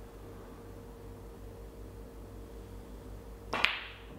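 Snooker cue tip striking the cue ball: one sharp click near the end, over a faint steady room hum.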